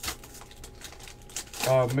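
A foil trading-card pack, a 2015-16 Panini Prizm basketball pack, torn open with a sharp rip at the start, followed by a few soft crinkles as the cards are pulled out. A man starts talking near the end.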